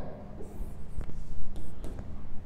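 Handwriting an equation: a few short scratchy strokes with a sharp tap about a second in.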